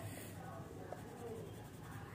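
Faint scratching of a colouring pencil rubbed on paper, shading and blending colour.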